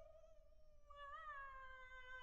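Unaccompanied soprano voice holding a soft, high note that slowly sinks in pitch, wavering slightly about a second in.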